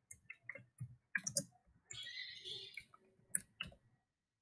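Computer keyboard keys clicking in an irregular run as a short phrase is typed. A brief soft hiss comes about halfway through.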